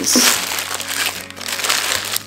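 Thin clear plastic bag crinkling and rustling as hands work a wooden ruler holder out of it.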